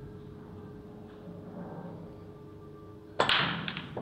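Break shot in English eight-ball pool: about three seconds in, the cue ball hits the rack of red and yellow balls with a sharp crack, followed by a rapid clatter of balls knocking together and off the cushions. Before it, only a low steady hum.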